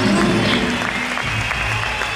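Live reggae band playing, with a repeating bass note under it, while the audience applauds.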